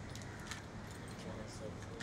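Low murmured voices over a steady hum, with a few brief light metallic jingles, about half a second in and again near the end.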